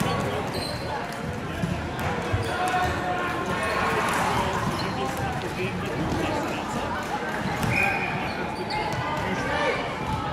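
Indistinct chatter of players and spectators echoing in a large indoor sports hall, with occasional thuds of volleyballs being hit or bouncing on the courts.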